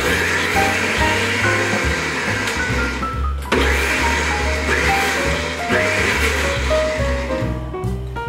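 Tefal Perfectmix high-speed blender with six toothed blades running, puréeing red chili, onion and pear, under background music. The blender sound breaks off briefly about three and a half seconds in, runs again, and fades near the end.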